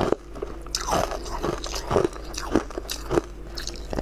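Close-up mouth sounds of a person biting and chewing a crunchy, clear translucent food: a string of sharp crunches, about two a second.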